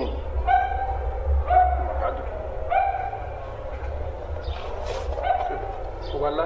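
A dog barking, four short barks spaced unevenly, over a steady low rumble.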